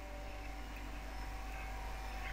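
Steady room tone: a low background hum with a faint constant tone over an even hiss, with no other sound.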